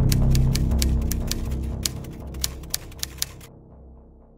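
Typewriter keys clacking in a quick, irregular run, as on a typed-out title, over a deep bass tone from intro music that fades away. The clacks stop about three and a half seconds in.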